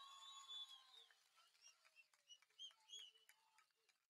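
Near silence, with faint whistle-like tones that fade out about a second in and a few scattered faint chirps after.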